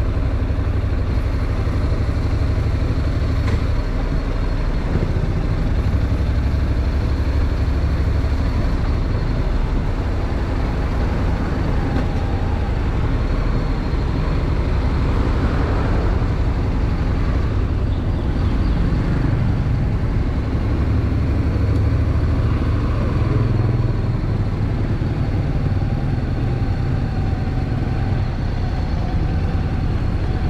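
Honda NC750X motorcycle's parallel-twin engine running steadily under way, mixed with road and wind noise. The sound swells briefly about halfway through.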